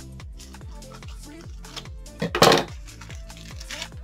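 Background music with a steady beat. About two seconds in comes a brief, loud crinkle of a plastic bubble mailer being cut open and handled.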